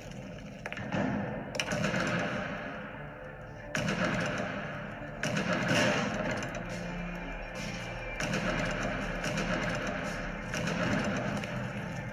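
Film background score mixed with battle sound effects, with several sudden loud bangs and crashes breaking in through the music.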